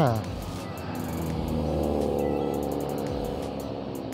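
Road traffic: a motor vehicle passing close by, its engine sound swelling to its loudest about two seconds in and then fading.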